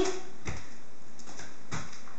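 Three dull thuds of hands and feet landing on an exercise mat during a burpee: one about half a second in, a fainter one, and a stronger one near the end.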